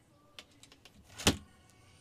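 A single short bump a little over a second in, with a faint click before it, against quiet room tone.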